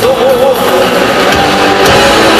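Live heavy metal band playing at full volume: electric guitars and drums, with a held, wavering note in the first half-second.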